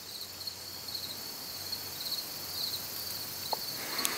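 Insects chirping outdoors: a steady high-pitched trill with pulsing groups of chirps over a faint hiss, and one brief short tone about three and a half seconds in.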